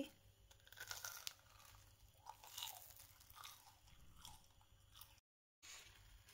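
Near silence with a few faint, scattered crunches from sugar-coated fried beignets. The sound cuts out completely for a moment near the end.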